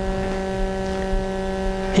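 Steady electrical buzz, a low pitch with a ladder of overtones held perfectly flat, typical of mains hum picked up by a sound system.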